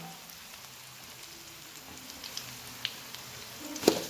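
Mashed cassava frying in a pan, a faint steady sizzle with small scattered crackles. Just before the end a spatula knocks sharply against the pan as stirring starts.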